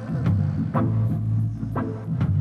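Live reggae band playing: a steady bass line with sharp offbeat electric-guitar chops about twice a second and drums, the vocal mostly between lines.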